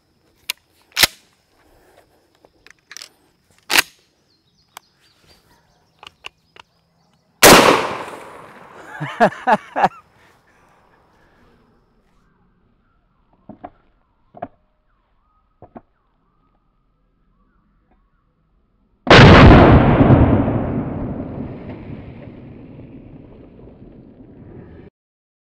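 12-gauge shotgun fired once with a load of 00 buckshot: a sharp blast about seven seconds in that rings off quickly, followed by a short laugh. Near the end comes a second, deeper blast that dies away slowly over several seconds.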